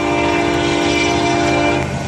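Florida East Coast Railway locomotive's air horn sounding one long, loud blast, a chord of several steady notes that cuts off near the end, over the low rumble of the approaching train.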